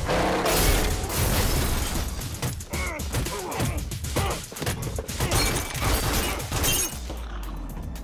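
Mixed action-film soundtrack: music under a rapid series of crashes and impacts, easing off near the end.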